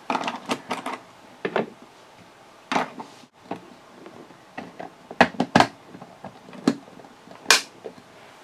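Trolls Poppy's Coronation Pod, a hard plastic toy playset, being folded shut by hand: a series of separate plastic clicks and knocks as its curved halves are pushed together, with the louder ones in the second half.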